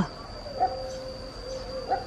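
Steady high-pitched insect drone, with a faint short call about half a second in.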